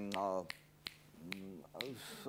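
A man snapping his fingers about five times, a little under half a second apart, between short vocal sounds.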